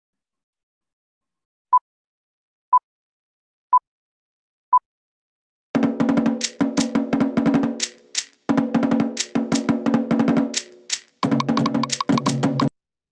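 Four short beeps, evenly one second apart, as a count-in, then Tahitian drum music starts about six seconds in: fast rhythmic drumming with wooden slit drums, pausing briefly twice.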